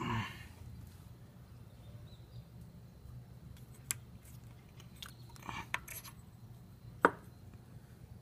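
Faint handling noises from the K20Z3 engine's timing chain and crank sprocket being worked by hand: a few small clicks and taps, the sharpest about seven seconds in, over a steady low hum.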